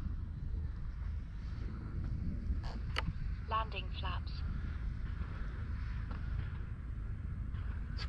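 Wind rumbling on the microphone at an open field, steady throughout. There is a sharp click about three seconds in and a brief faint voice just after it.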